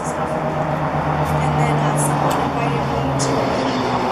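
A woman's voice through a handheld microphone, words indistinct, over a steady low hum that shifts pitch a few times.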